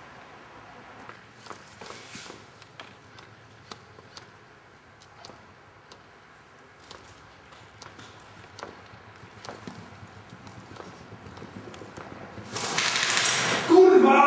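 Scattered sharp clicks and knocks, then near the end a loud, rapid burst of full-auto airsoft rifle fire lasting about a second and a half.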